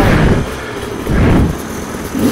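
Two-stroke Sherco 300 enduro motorcycle engine running, with two short throttle blips about a second apart.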